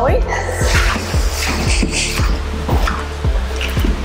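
Background music with a steady beat: a low bass line under deep kick-drum thumps about two or three times a second.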